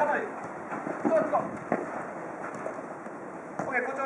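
Futsal players' short shouts across the court, with a few sharp knocks of the ball being kicked and shoes on the turf.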